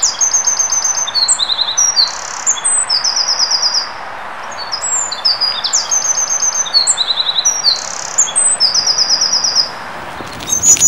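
Eurasian wren singing two long, loud phrases of rapid high trills and sharp notes, with a short break a little before halfway. A steady hiss of background noise runs underneath.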